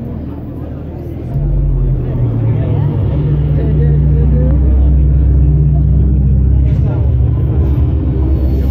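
A deep, loud low rumble starts suddenly about a second in and holds, its pitch stepping up a little, over crowd chatter.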